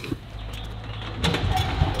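Engine running with a low, steady rumble, growing louder about a second in.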